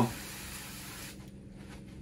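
Pressure sprayer with a long wand spraying water into a terrarium, a steady hiss that cuts off about a second in.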